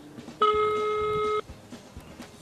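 Telephone ringback tone heard through the phone: one steady tone of about a second, the sign that the call is ringing at the other end and has not yet been answered.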